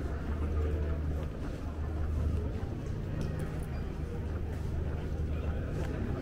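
Airport check-in hall ambience: a steady low rumble with a murmur of voices in the background.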